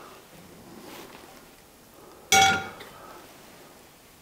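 A stainless steel skillet set down on the stovetop: one metallic clank about two seconds in that rings briefly with several clear tones, with faint room tone around it.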